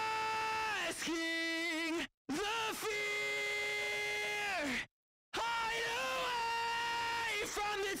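A sung lead vocal re-amped through a Walrus Audio Voyager guitar pedal and heard on its own straight out of the pedal: high-gain distortion weighted to the mid-range on long held notes. It comes in three phrases broken by two short, sudden silences, about two and five seconds in.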